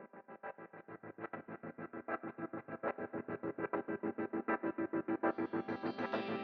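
Fading-in intro of a djent/progressive metalcore track: an effects-processed electric guitar repeating a fast pulsed note pattern, about eight pulses a second, growing steadily louder. A fuller sustained layer begins to come in near the end.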